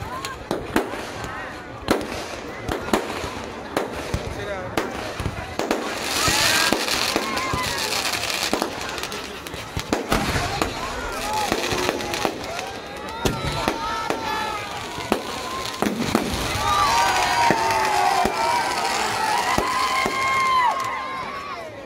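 Fireworks going off in quick succession: many sharp bangs and crackles, with crowd voices underneath.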